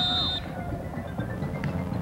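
Stadium background between plays: a steady high whistle tone ends about half a second in, then faint music and crowd noise.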